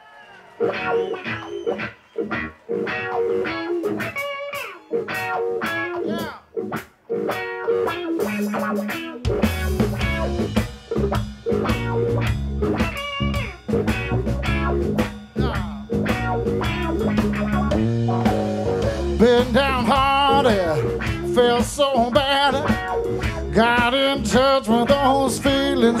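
A live electric blues trio starts its first song. Electric guitar opens with bent notes, then about nine seconds in the bass guitar and drums come in and the full band plays on.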